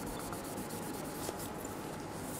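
A paper tissue rubbing back and forth over a sample of a tablet's coated plastic back, wiping off a permanent-marker mark. A steady, fairly quiet scrubbing.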